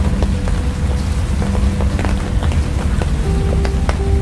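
Raindrops tapping in scattered ticks on a car's windshield and body while it drives, over a steady low road rumble. Music with long held notes plays alongside.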